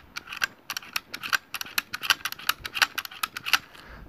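Quick, irregular light metallic clicks, several a second, from the action of a VR-60 shotgun being worked by hand after its gas piston was fitted with new O-rings.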